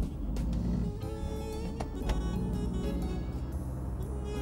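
Background music playing over the low, steady running of a Volkswagen van's engine as the van pulls away.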